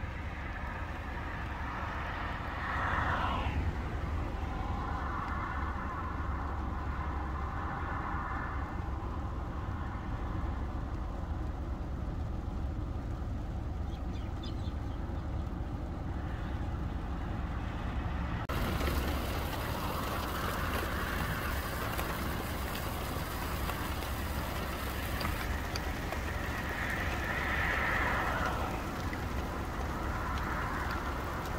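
Road traffic: vehicles passing several times, each a swelling and fading rush of engine and tyre noise (about three seconds in, around twenty seconds and again near the end), over a steady low rumble.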